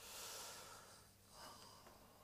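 Near silence apart from a person's breath: a soft breath of about a second, then a shorter, fainter one.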